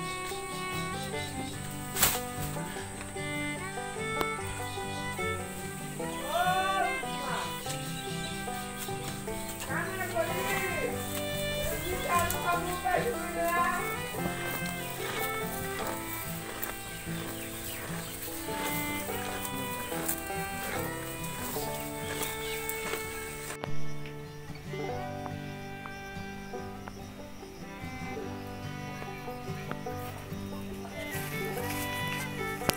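Background music with sustained notes and gliding melodic phrases, with one sharp click about two seconds in.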